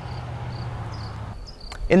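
Insects chirping outdoors in short, evenly repeated chirps, over a steady low hum and hiss.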